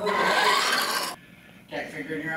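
Radio-controlled monster truck running across a smooth hard floor: a loud raspy rush of tyres and drivetrain that cuts off abruptly about a second in.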